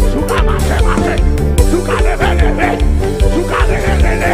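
Live upbeat praise music with a loud, heavy bass beat, and a male singer's voice over it through a microphone.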